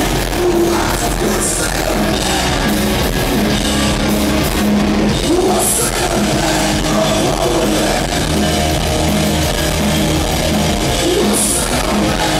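A punk rock band playing loud and steady through the stage PA, with electric guitar, bass guitar and drum kit.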